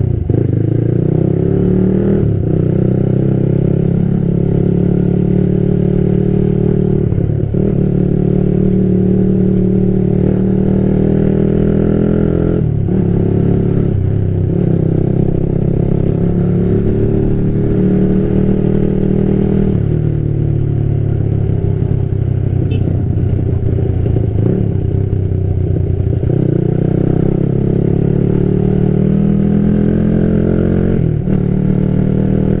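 Yamaha Jupiter MX motorcycle engine, bored up to 177 cc with a 62 mm piston, running as the bike is ridden. Its note dips and climbs again every few seconds as the throttle is eased off and opened.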